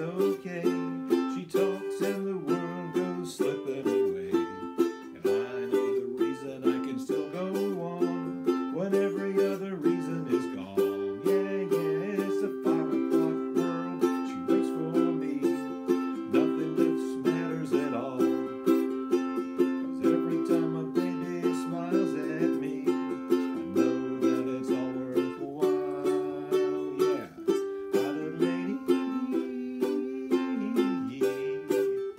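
Ukulele strummed in a steady rhythm, with a man singing along, in a small room.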